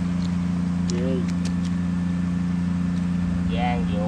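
Shrimp-pond aerator motor running with a steady, even hum, with short bits of voice over it.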